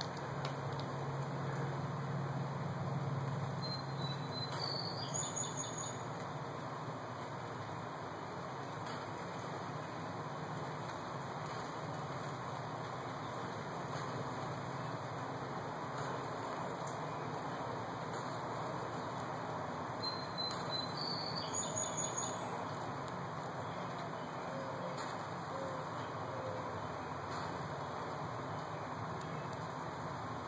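Steady outdoor background noise with a bird calling twice, a short high chirp rising in steps about five seconds in and again about twenty-one seconds in.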